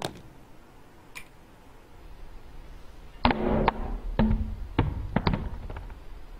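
A Samsung Galaxy S4 dropped onto a hard slab in a drop test: a cluster of sharp knocks and clatters begins about three seconds in and runs for about two and a half seconds.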